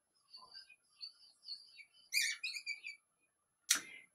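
Marker tip squeaking against the drawing surface in a string of short, high chirps as it draws small strokes, with a short sharp sound near the end.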